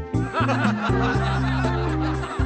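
Background music with a steady bass line, and laughter over it from about a third of a second in.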